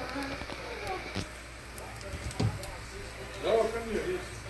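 Corn tortillas frying in butter in a cast iron skillet, a faint steady sizzle. A background child's voice comes in near the end, and there are a couple of light knocks.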